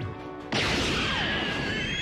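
Anime soundtrack: music under a sustained note, then about half a second in a sudden crash-like blast effect with a slowly rising whistling tone.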